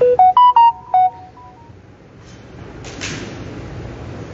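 Short electronic chime jingle: about five quick, loud notes, rising then falling in pitch, within a second, with a brief echo after. A short rustle follows about three seconds in.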